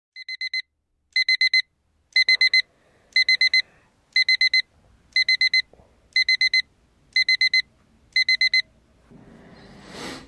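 Smartphone alarm beeping in groups of four quick, high beeps, about one group a second, the first group quieter than the rest. The beeping stops near the end, and a rising rustling noise follows.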